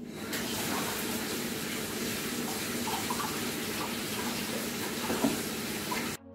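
Steady rush of running water, as from a tap, starting suddenly just after the start and cutting off abruptly at the end.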